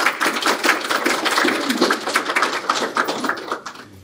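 Audience applauding, a dense patter of many hands clapping that thins out and fades near the end.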